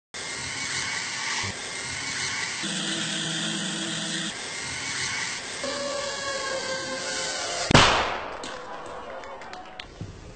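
Edited sound-effect montage: blocks of noise and short hums that switch abruptly every second or so, then one sudden loud blast about three-quarters of the way in, the loudest sound, ringing away over the next two seconds.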